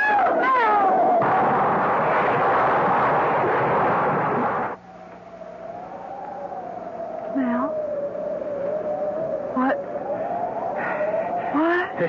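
Radio-drama sound effect of a car swerving off a bridge: a woman's scream runs into a loud burst of rushing noise that lasts about three and a half seconds and cuts off suddenly. It is followed by a single wavering held tone for several seconds.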